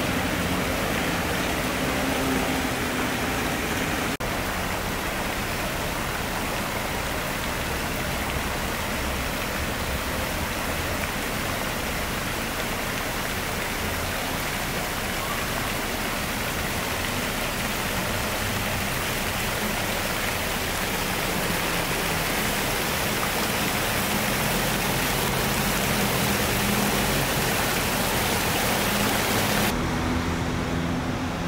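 Steady rushing of running water, even and unbroken, with a faint low hum of traffic under it at times.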